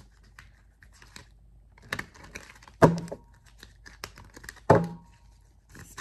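A deck of rune cards being shuffled by hand: a light rustle and flicking of card against card. Three sharp slaps stand out, about two, three and nearly five seconds in.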